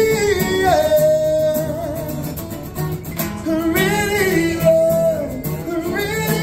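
Man singing live to his own strummed acoustic guitar, with long held notes that slide up and down in pitch over a steady strumming rhythm.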